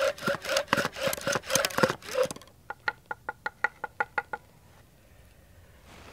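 Wooden bow drill being worked hard: quick back-and-forth strokes of the bow with the spindle squealing against the fireboard, stopping a little over two seconds in. It is followed by a quick run of about ten short, pitched squeaks.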